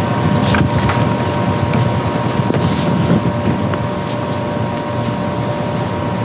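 Applause: a roomful of people clapping steadily.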